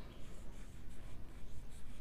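Chalk scratching on a blackboard as letters are written, a run of short scratchy strokes.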